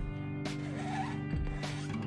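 Soft background music, with a kitchen knife scraping chopped cilantro off a plastic cutting board and a couple of light knocks.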